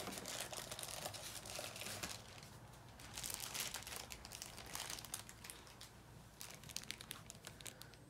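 Clear plastic wrapping crinkling as a bagged figure piece is lifted out of its styrofoam packaging tray and handled: faint, irregular crackles, busier in the first half and thinning out towards the end.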